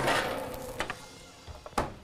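Small handling noises on a kitchen worktop while dough is being worked: a brief hiss at the start, a couple of soft clicks, and one sharper knock near the end.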